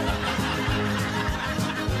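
Light background music with a person snickering and laughing over it.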